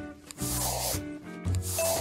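Paintbrush-stroke sound effect: two scratchy brushing strokes, about half a second each, one shortly after the start and one near the end. Background music with bell-like notes and a bass line plays under them.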